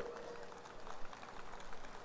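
A pause in a speech amplified over loudspeakers: the echo of the last word dies away just after the start, leaving faint steady background noise.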